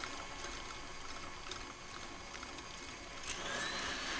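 KitchenAid stand mixer with its wire whisk in a glass bowl of egg yolks and sugar. After some faint handling clicks, its motor starts about three-quarters of the way in, and its whine rises in pitch as it speeds up toward high speed.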